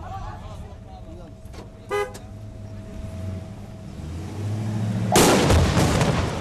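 Ambulance engine running and pulling away, with one short horn toot about two seconds in. Near the end a sudden loud burst of noise, the loudest sound here.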